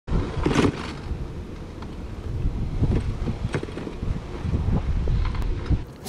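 Wind rumbling on the microphone while a bicycle is ridden along a paved street, with bike rattles and a few sharp clicks.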